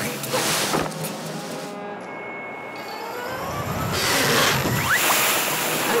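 Cartoon sound effect of water gushing and spraying from a leaking hand-pump tap, over background music. The rush of water swells and grows loudest about three to five seconds in.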